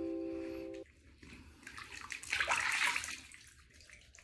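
A held musical chord cuts off abruptly about a second in. Then comes bath water splashing as hands scoop and rub water over the face, loudest a little past the middle before fading.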